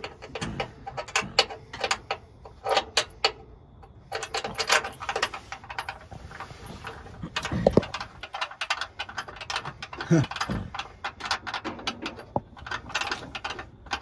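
Irregular metallic clicks and clinks of an engine-mount bolt and mount being worked by hand to line them up on a small-block Chevy, with a couple of louder knocks about eight and ten seconds in.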